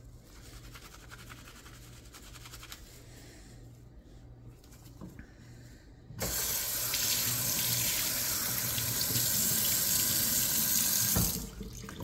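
Soapy cotton shirt rubbed and scrubbed by hand, faintly. About six seconds in a kitchen faucet is turned on and water runs onto the fabric and into a stainless steel sink for about five seconds, then is shut off suddenly.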